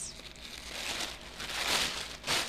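Layers of tissue paper rustling and crinkling as they are pulled apart and crumpled by hand, growing louder toward the end.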